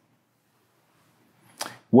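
Near silence, then about one and a half seconds in a short, sharp intake of breath, with a man's voice beginning a word at the very end.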